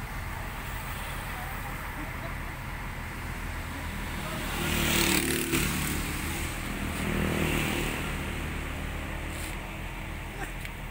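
A motor vehicle engine running steadily, swelling louder about halfway through and again shortly after, with voices in the background.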